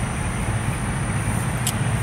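Steady low rumble of a truck's engine running, with a short tick near the end.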